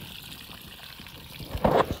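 Water pouring steadily from a bilge pump's outlet as the pump empties a water-filled canoe, with a brief louder burst of noise near the end.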